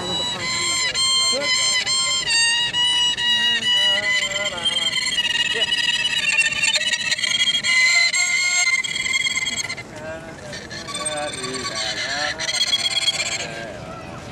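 A Chinese two-string bowed fiddle of the erhu family playing a slow melody of held notes with pitch slides and vibrato. The playing drops in level briefly about ten seconds in, then goes on.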